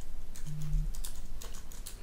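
Computer keyboard keys clicking in a quick, irregular run of keystrokes, starting about half a second in.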